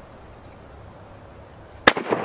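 A single shot from a Mosin-Nagant 91/30 bolt-action rifle firing 7.62×54R full-metal-jacket ball ammunition: one sharp crack near the end, after a quiet stretch.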